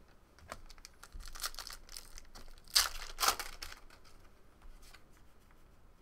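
A foil trading-card pack wrapper being torn open and crinkled, a run of short crackling rips with the two loudest about halfway through, then fainter rustling as the cards are handled.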